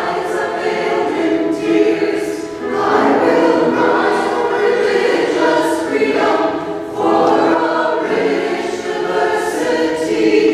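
Church choir of mixed men's and women's voices singing together in phrases that swell and ease every couple of seconds.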